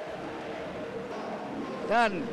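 Indistinct background voices over the arena's room noise, ending with a short, loud vocal sound that falls in pitch.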